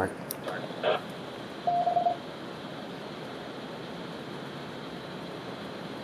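Yaesu FTM-7250D ham radio receiving a repeater after unkeying: a short click about a second in, then a single courtesy beep about half a second long, then steady hiss from the repeater's carrier. The hiss ends with a small squelch-tail click as the repeater drops and the squelch closes.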